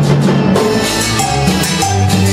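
Live cumbia band playing: an electric bass line moving under keyboard, with congas and timbales keeping a steady beat.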